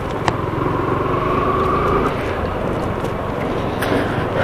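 Yamaha R15M's 155 cc single-cylinder engine running steadily as the motorcycle rolls slowly through town traffic, with a brief click a moment in.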